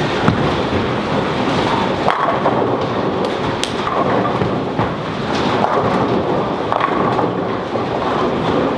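Bowling-alley din: bowling balls rolling down the wooden lanes and pins crashing, a steady rumble with about half a dozen sharp knocks scattered through it.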